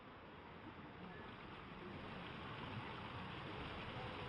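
Faint, steady rushing of water pouring from a water slide's outlet into the pool, slowly growing louder.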